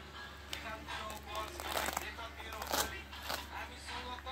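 Rustling and handling noise from a black fabric bag and a zippered case being handled, a few sharper rustles standing out.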